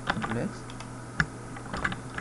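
A few computer keyboard keystrokes as a selected line of code is cut and pasted, the sharpest about a second in. A brief murmur of a voice at the start.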